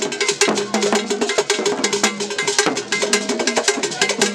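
Ghanaian traditional drumming: hand drums, a stick-beaten drum and gourd rattles play a dense, fast rhythm with many strokes a second and no break.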